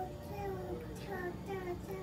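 A child singing faintly in the background: a run of short notes, each sliding down in pitch, two or three a second.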